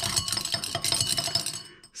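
A glass stirring rod stirring granulated zinc in water in a glass beaker: a rapid run of light clinks as the rod and zinc granules knock against the glass, thinning out about a second and a half in.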